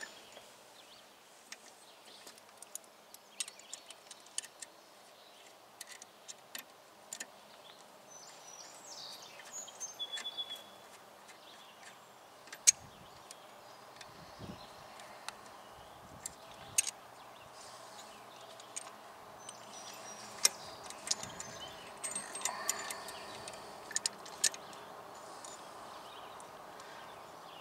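Scattered small metallic clicks and ticks of pliers working on a steel brake line and its fitting. A few faint bird calls come about nine to ten seconds in.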